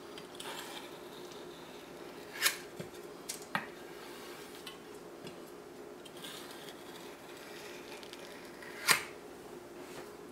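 Large metal spatula scraping buttercream across the rim of a stainless steel cake ring, with soft scraping and three sharp metal clicks, the loudest near the end. A low steady hum lies underneath.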